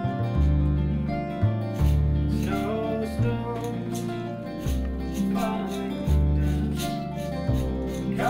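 Acoustic music led by an upright double bass playing long, deep notes that change about once a second, with plucked strings and light percussive clicks above.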